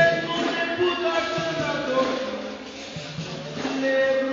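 Capoeira music: voices singing a chant. The singing drops back about two and a half seconds in and picks up again near the end.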